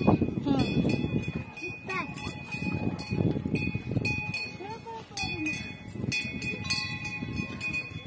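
Metal bells struck again and again, their ringing tones lingering between strikes, over people talking.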